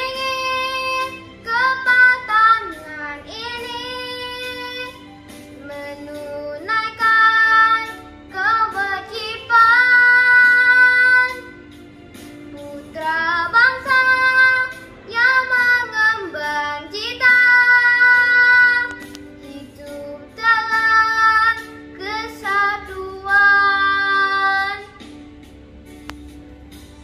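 A young girl singing solo over a quiet musical backing, in phrases with long held notes and short pauses between them. Her singing stops about a second before the end, leaving only the backing.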